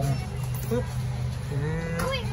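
Coca-Cola Arctic Coke slush machine running after its button is pressed: a steady low hum from the base holding the bottle, while the supercooled Coke is worked into slush.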